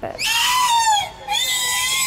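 A female killer whale calling in air with its head above the surface: two long, high calls, the first falling in pitch near its end, the second held steady.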